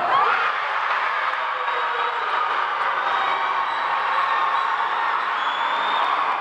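Crowd of spectators cheering and screaming after a penalty goal in a futsal shootout, a steady din with high shouts in it.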